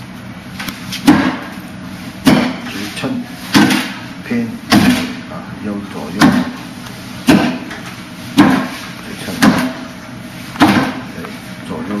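Forearms and hands striking the arms and trunk of a Wing Chun wooden dummy (mook yan jong). Sharp wooden knocks come about once a second, around ten in all, with lighter taps between them.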